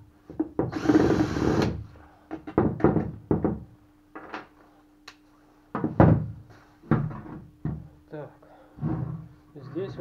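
Cordless drill-driver spinning for about a second, backing a bolt out of the water pump housing on top of an outboard lower-unit gearcase. It is followed by a series of separate knocks and clunks as the drill and metal parts are handled and set down on a wooden bench.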